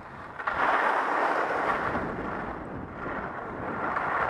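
Atomic 100 CTi skis sliding and carving on packed snow, with wind rushing over a helmet camera's microphone during a downhill run: a steady rushing noise that swells about half a second in.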